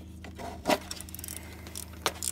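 A few light metallic clicks of a wrench working a bolt on the engine's oil filter housing, the loudest about two-thirds of a second in, over a steady low hum.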